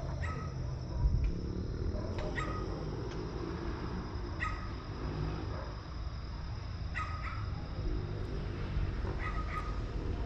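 Distant dogs barking, short barks every two seconds or so, some in pairs, over a steady low rumble.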